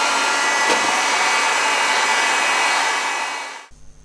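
Handheld hot air gun blowing steadily, a rush of air with a steady fan whine, heating a 3D-printed plastic plate along a bend line. It fades out near the end.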